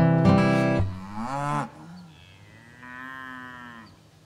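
Acoustic guitar music ends within the first second, then a cow moos twice: first a short call rising in pitch, then, about a second later, a longer and quieter one.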